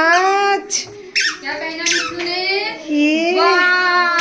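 A young child's high-pitched, wordless sing-song voice, drawn out in long gliding notes.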